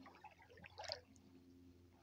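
Near silence: faint outdoor background with a brief faint rustle just before a second in.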